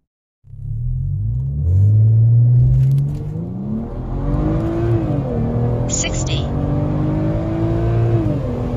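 Stage-1-tuned BMW 335i xDrive's turbocharged straight-six, heard from inside the cabin, accelerating hard from a standing start. It starts about half a second in, its note climbing steadily, drops at an upshift about five seconds in, then climbs again to another upshift right at the end.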